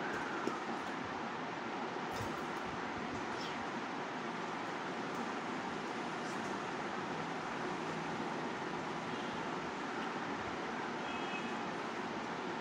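Steady, even background noise with no clear speech.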